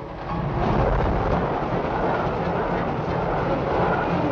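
A British Rail Class 55 Deltic diesel express locomotive and its coaches passing close at speed: a loud, steady roar of engine and wheels on rail that swells in the first half second and then holds.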